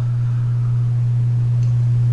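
A steady low hum holding one unchanging pitch, with no other clear sound over it.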